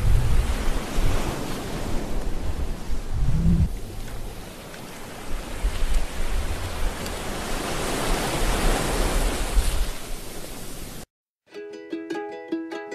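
A loud rushing noise with deep rumbles that swells and eases. It cuts off abruptly about a second before the end, and plucked ukulele music begins straight after.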